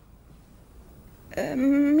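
A brief lull with only faint room tone, then a woman's voice starts speaking about one and a half seconds in, drawing out its first syllable on a steady pitch.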